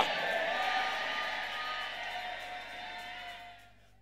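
Congregation cheering and shouting in response, a mass of voices that fades away over about four seconds.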